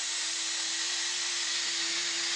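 Aerosol hairspray hissing in one long steady spray, with a steady held tone running under the hiss.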